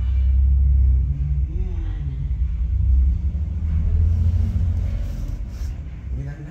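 Film soundtracks from several movies playing at once on a computer, dominated by a loud, deep, steady rumble.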